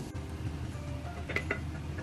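Wooden spatula working onions in a frying pan, with two light knocks against the pan about a second and a half in.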